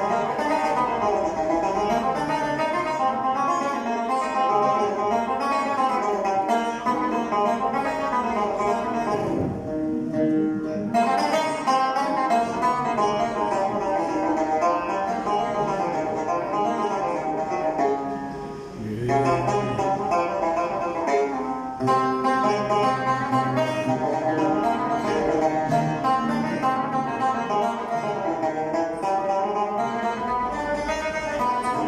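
Instrumental passage played by a plucked-string ensemble of oud, banjos and acoustic guitars playing a melody together, with no singing. The playing thins briefly about two-thirds of the way through.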